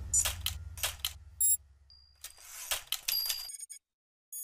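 Edited end-card sound effects over the fading tail of the background music: a run of quick clicks and swishes, a short high metallic ping, a thin high beep, a rising swish, and a cluster of bright ringing pings near the end as the low music drone dies away.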